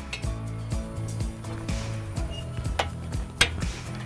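Background music with a few sharp metallic clicks from a chain fence-stretcher puller as its tension is let off. The loudest click comes about three and a half seconds in.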